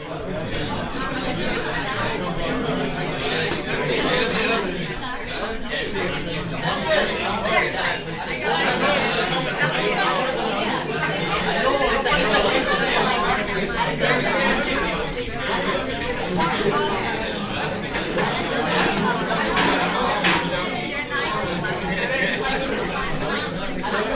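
Many people talking at once in pairs and small groups: a room full of overlapping conversations, with no single voice standing out.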